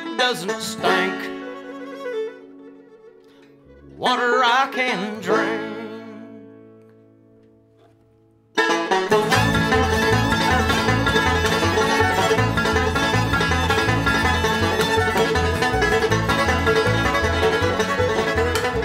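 Background music: two slow, sliding melodic phrases that each fade away, then about eight and a half seconds in a full band comes in suddenly with a steady, quick beat.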